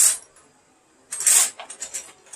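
A hand rummaging among small metal tools in a container: two short rattling clatters, one at the very start and one about a second in, then a few light clicks.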